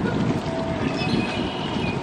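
Outdoor ambience: a steady, fluctuating low rumble, typical of wind on the microphone and distant traffic, with faint brief higher chirps over it.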